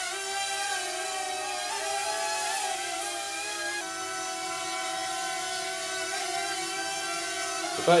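Steady high whine of a small LEGO-built micro quadcopter's four motors in flight, hovering with a foam-board wing fitted. The pitch shifts slightly about four seconds in as the throttle changes.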